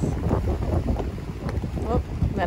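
Wind buffeting the microphone over the wash of sea waves on a rocky shore, a low, ragged rumble. A faint voice is heard briefly near the end.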